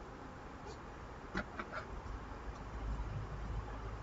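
Faint rustling of fabric strips being folded and tucked in by hand, with a few soft clicks about a second and a half in.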